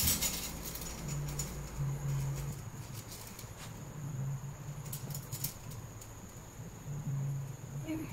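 Quiet workshop room tone with a steady faint high whine and a few light clicks from handling a tape measure and marker against a steel bar.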